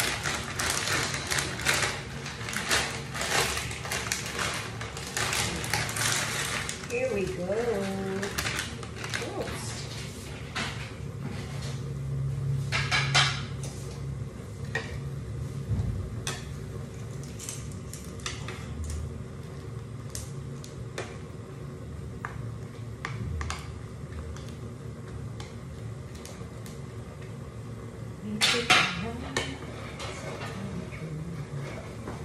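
A wooden spatula and a plastic ladle scraping and knocking in a nonstick wok as pancit canton noodles are stirred into simmering broth. The clatter is densest in the first few seconds, then turns into scattered scrapes.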